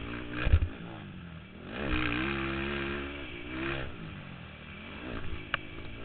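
Racing ATV engine heard from on board, revving up about two seconds in, holding for a couple of seconds, then dropping off. Loud thumps and rattles about half a second in as the quad hits the rough dirt track.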